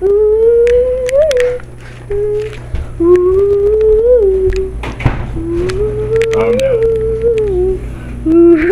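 A girl humming long held notes in four phrases with short breaks between, each rising slowly with a little lift at its end. A knock sounds about halfway through.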